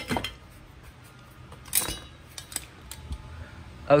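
Metal parts clinking and knocking as they are shifted about in a pile of salvaged electrical gear: a handful of separate short strikes, the loudest about two seconds in.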